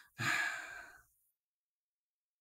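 A man's breathy sigh of hesitation, lasting about a second, loudest at its start and then fading out.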